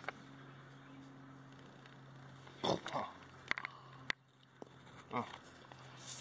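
A low, steady hum broken by a man's short surprised exclamations and two sharp clicks; the hum drops out briefly after the second click, about four seconds in.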